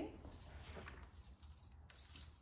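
Quiet room tone with a low steady hum and faint scratchy handling sounds of dried botanicals and foliage being moved.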